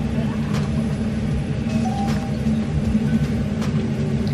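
A steady low mechanical hum, with a few faint soft clicks.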